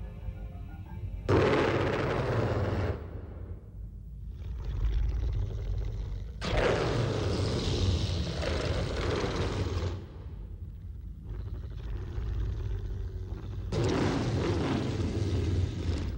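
Horror-film sound effects: a low rumbling drone under three loud rushing blasts of noise, each lasting two to four seconds, the first starting about a second in.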